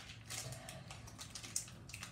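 Faint scattered light clicks and rustles of hands handling sour gel candies and their small plastic packets.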